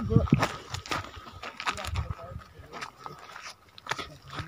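Footsteps on a rocky, gravelly trail, irregular, with a brief voice just after the start.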